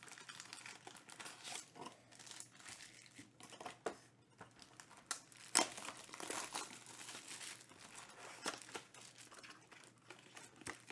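Clear plastic shrink wrap on a trading card box being crinkled and torn off, in irregular crackles with one louder rip about five and a half seconds in.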